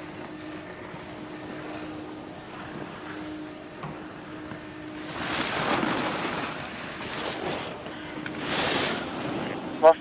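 Ski edges carving on packed snow during giant-slalom turns: two swells of scraping hiss, about halfway through and again shortly before the end, over a faint steady hum.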